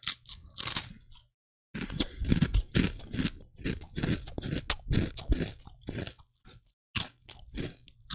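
A person crunching and chewing hard, dry bread chips (7 Days Bake Rolls) close to the microphone. It comes as irregular crisp crunches: a couple near the start, then a long run of steady chewing, tailing off near the end.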